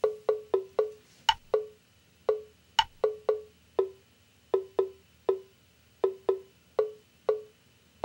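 Background music made of wood-block-like percussion: a syncopated pattern of short, quickly fading knocks on two close low notes, with two sharper, higher knocks among them.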